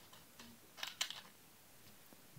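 A few faint, short clicks, the clearest about a second in.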